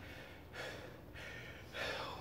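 A man breathing hard and rhythmically from the exertion of push-ups, with a breath roughly every half second. The breaths grow louder near the end.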